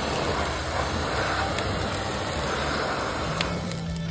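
Charcoal fire in a small metal grill burning hard: a steady rushing noise with a couple of sharp crackles, about a second and a half in and again near the end.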